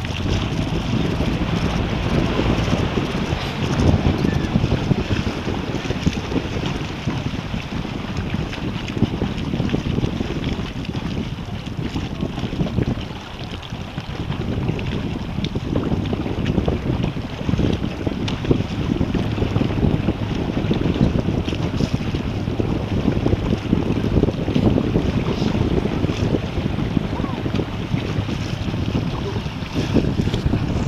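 Wind buffeting the microphone in steady gusts, over water lapping and splashing around a small boat under way.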